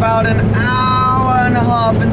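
A man's long, drawn-out wordless vocal, held for over a second and falling in pitch near the end, over the steady low drone of a Lotus Elise's engine and road noise inside the small cabin.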